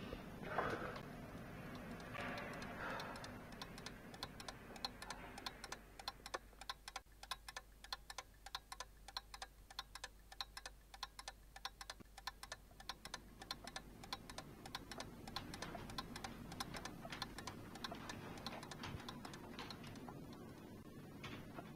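A wall clock ticking in quick, even ticks, starting a few seconds in and running most of the way through. A brief soft sound about half a second in is the loudest moment.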